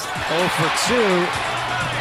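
Basketball TV broadcast audio: arena crowd noise with a man's voice calling out briefly, and a steady low musical tone coming in near the end.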